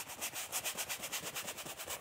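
A one-inch brush scrubbing oil paint onto a canvas in quick, even back-and-forth strokes, a soft rhythmic scratching.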